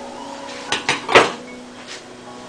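Three short knocks, the loudest just after a second in, over a faint steady hum.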